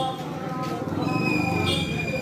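Voices, with a steady high-pitched tone joining about halfway through and held.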